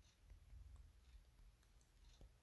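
Near silence, with a few faint clicks and a faint low rumble.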